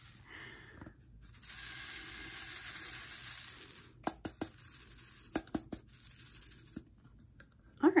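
Square diamond-painting drills rattling as they are shaken in a grooved plastic sorting tray: a steady rattle for about two and a half seconds, then a scatter of light clicks as the drills settle into the grooves.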